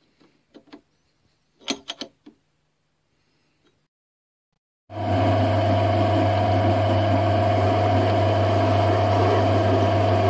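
A few faint metallic clicks as a steel flange is set in a lathe chuck, then, about halfway through, the lathe starts running steadily with a low hum and a steady higher whine, its chuck spinning with a hole saw in the tailstock drill chuck ready to cut the flange centre.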